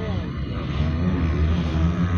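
Several flat-track racing motorcycle engines running and revving out on the dirt track, growing somewhat louder about a third of the way in, with nearby voices of spectators over them.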